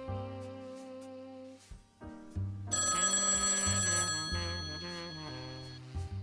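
Telephone ringing: one long ring of about three seconds, starting a little before halfway, the loudest sound here, over background music.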